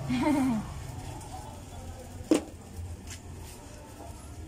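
Low, steady background noise with one sharp knock of a hard object a little past the middle and a fainter one soon after; a brief voice sounds at the very start.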